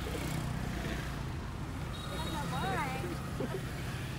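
Road traffic: a motor vehicle engine running with a steady low hum, and a brief voice about two and a half seconds in.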